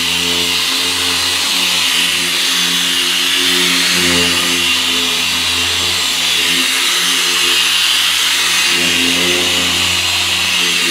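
Handheld electric car polisher running at speed six under medium pressure, its foam pad working the paint of a car door: a steady motor hum and whine that wavers slightly in pitch.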